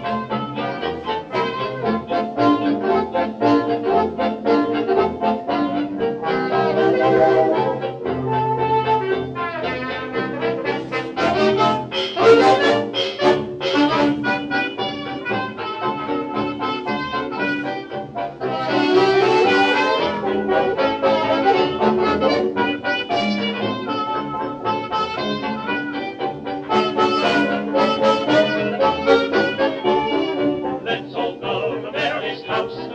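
Instrumental passage of an early dance-band fox-trot recording, led by brass (trumpet and trombone) over a steady dance beat.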